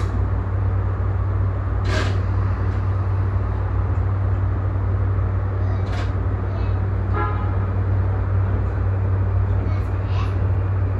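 Steady low electrical hum and even running noise inside an E235-1000 series electric train, with a few sharp clicks and a brief tone about seven seconds in.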